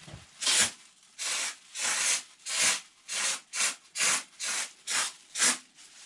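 Kraken spray foam insulation hissing out of a canister-mounted foam gun in about ten short spurts, roughly one every half second, as the trigger is pulled in quick squeezes to fill a small missed gap.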